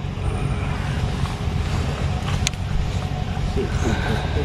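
A steady low rumble, with one short sharp click about two and a half seconds in.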